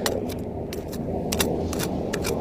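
Small Korean hand hoe (homi) working sandy soil: a run of sharp, irregular scraping clicks as the metal blade strikes grit, over a steady low rumble.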